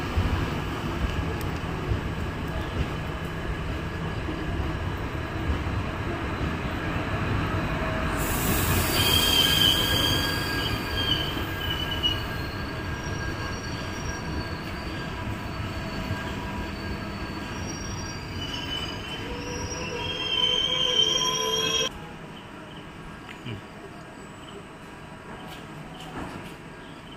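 Indian Railways passenger coaches rolling slowly past along a platform with a steady low rumble. High-pitched metallic squealing from the running gear comes and goes through the middle of the stretch. Near the end the sound drops abruptly to a quieter rumble.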